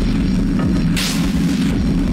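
Instrumental music from an analog modular synthesizer: a steady low bass drone with repeated low drum hits under it, and a hissing noise hit about a second in, at a slow downtempo pace.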